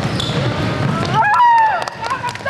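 Sounds of a basketball game on a hardwood gym court: sneakers squeaking on the floor with short, bending squeals about a second in, and players' feet and the ball thudding, over voices in the background.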